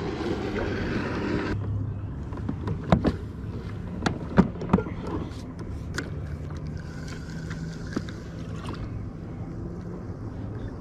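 A handful of sharp clicks and knocks from a spinning rod and reel being handled in a kayak. A faint steady whir follows over the last few seconds as the reel is wound in.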